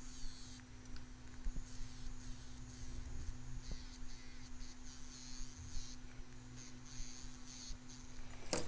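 Small handheld rotary tool with a thin cutting disc running at a steady pitch as it cuts through the thin metal shield cage on a phone logic board. High scratching hiss comes and goes as the disc bites into the metal.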